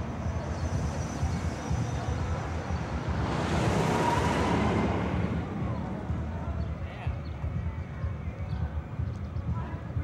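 Outdoor car-park ambience: indistinct voices over a steady low rumble, with a rushing noise that swells and fades about three to five seconds in, like a vehicle passing.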